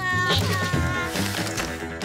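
High, squeaky cartoon lemming voices cry out in two held calls within the first second, over background music with a steady bass line.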